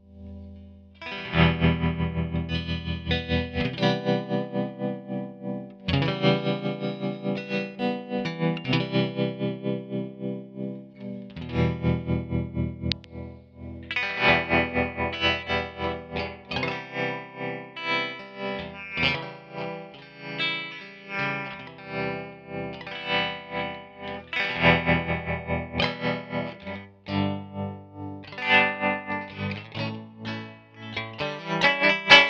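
Electric guitar, a custom Jazzmaster, played through a Qi-Gon envelope/LFO filter pedal (a Mu-Tron III–style state-variable filter) into a Yamaha THR10 amp. The filtered notes pulse in level about four times a second. The playing starts about a second in.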